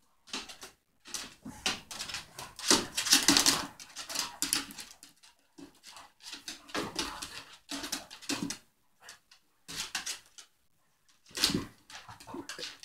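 Two dogs play-fighting on a wooden floor: scuffling and clicking of claws in short, irregular bursts with brief pauses, with occasional soft dog whines.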